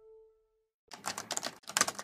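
A rapid clatter of computer-keyboard typing in two short bursts, starting about a second in, after the last note of the outro music fades away.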